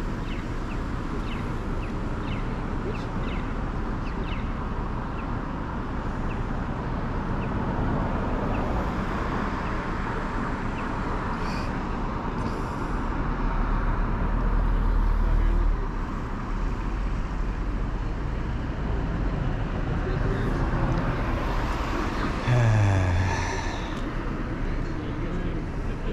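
Night-time city traffic at an intersection: a steady hum of cars, with a low rumble swelling in the middle. Near the end a vehicle passes close, its engine note falling in pitch.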